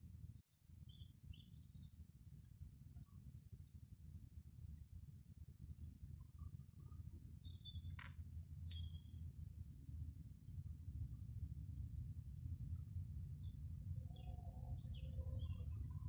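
Faint background of a steady low rumble with scattered short bird chirps, and two sharp clicks close together about eight seconds in.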